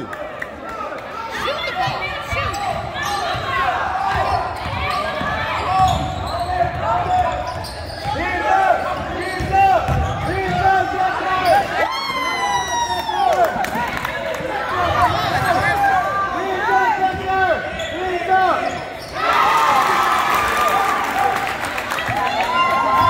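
A basketball game in a gym: a ball bouncing on the hardwood floor and sneakers squeaking in short chirps, under a background of crowd voices in a large echoing hall. The crowd noise swells near the end.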